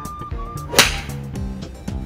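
A golf club striking a ball off a driving-range mat: one sharp crack a little under a second in.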